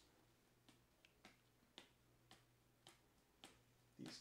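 Near silence with about seven faint, short clicks scattered through it, from trading cards being handled by hand.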